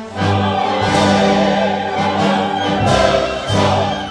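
Opera chorus singing with full orchestra, a loud, sustained ensemble passage.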